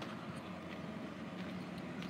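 Faint, steady hum of road traffic and vehicle engines outdoors.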